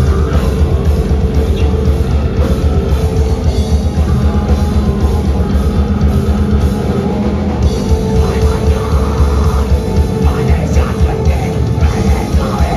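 A metal band playing live at full volume: heavily distorted guitars and bass over fast, dense drumming.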